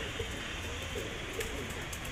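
Domestic pigeons cooing, low and wavering, over a steady low background hum.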